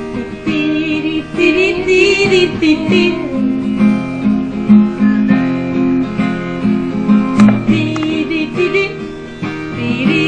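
Background music: a song with guitar.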